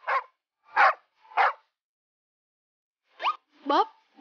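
A dog barking three short times in the first second and a half, then two short rising yelps near the end.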